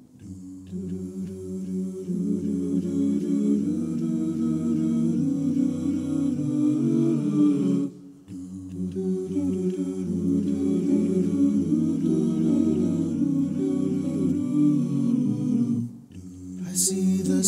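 Wordless a cappella vocal harmonies: several stacked voices sustaining chords, in two long phrases with a short break about halfway through.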